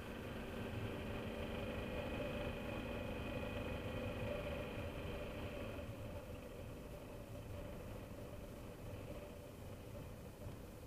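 BMW F650GS Dakar's single-cylinder engine running steadily at low road speed, then easing off and getting quieter from about six seconds in as the bike slows.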